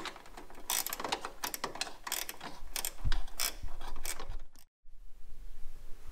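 A 10 mm ratchet spanner clicking as a bracket nut is tightened, a run of sharp clicks a few a second that cuts off suddenly about four and a half seconds in.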